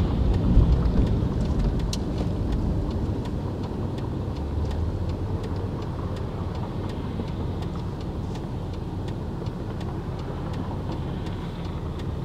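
Road and engine noise inside a car's cabin as the car turns left through an intersection: a steady low rumble that eases a little in the first few seconds. Faint, regular ticks of the turn signal run through it.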